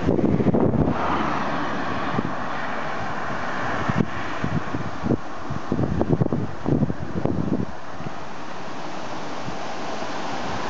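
Steady rush of wind on the microphone mixed with road traffic noise, with a run of short, soft knocks a few seconds in.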